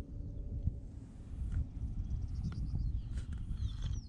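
Wind rumbling on the microphone, a low, unsteady noise, with a few faint bird chirps near the end.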